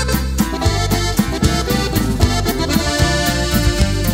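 Instrumental opening of a norteño corrido: an accordion leads the melody over a bass line and a steady, even beat.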